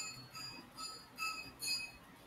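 A quick series of short, high ringing pings, about five in two seconds, each a clear chiming tone.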